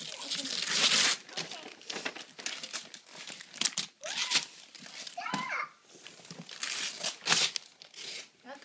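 Wrapping paper being torn and crumpled off a gift box in a series of quick rips.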